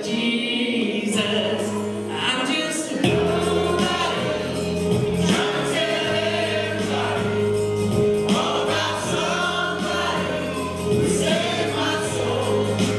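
A small mixed group of men and women singing a gospel song together into microphones. Steady held accompaniment notes and a bass line come in about three seconds in.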